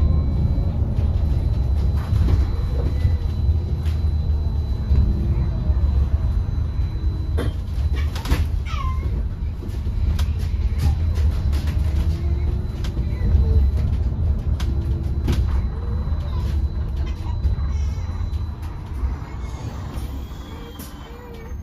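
Interior of a Wright StreetDeck Electroliner battery-electric double-decker bus on the move: a steady low rumble of road and drive noise with a faint high whine and scattered rattles and clicks. A short falling squeak about eight seconds in.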